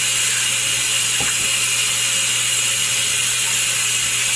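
Tap water running steadily from a faucet into a sink already holding water.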